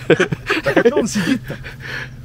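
Men's voices talking, over a steady low hum.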